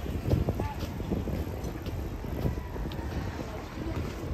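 Wind buffeting the microphone, an uneven low rumble that rises and falls throughout, over outdoor street ambience with faint voices of passers-by.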